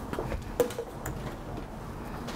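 A few faint clicks and taps of handling over quiet room tone, as an aerosol hairspray can is set down on a table.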